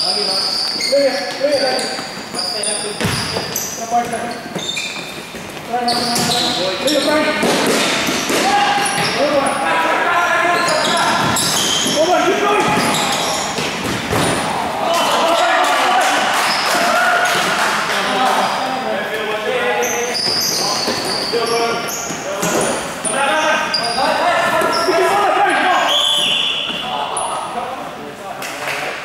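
Futsal game in a large hall: players' voices calling out across the court, with the ball's kicks and bounces and short high squeaks of shoes on the court floor, all echoing.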